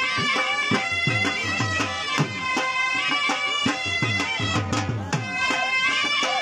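Punjabi dhol drum beating a steady run of strokes under a loud reed wind instrument holding a sustained melody: live folk dance music.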